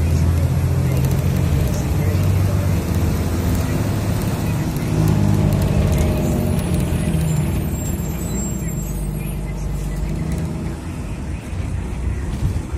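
Steady engine and road rumble of a moving road vehicle, heard from inside it.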